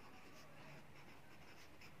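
Faint scratching of a pencil writing on workbook paper.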